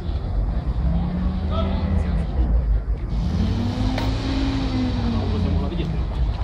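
A motor vehicle's engine revving up and dropping back twice, the second rise longer, over a steady low rumble.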